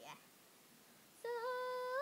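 A girl's voice singing one long, high held note, starting a little over a second in, after a short sliding vocal sound at the very start.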